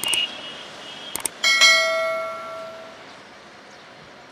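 Two quick clicks, then a bright bell ding that rings and fades away over about a second and a half: the notification-bell sound effect of an animated subscribe button.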